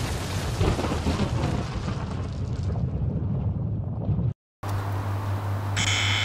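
Cinematic logo-intro sound effect: a loud, noisy blast with a heavy low end whose high end fades away over about four seconds, then cuts off suddenly. After a brief silence a low steady hum follows.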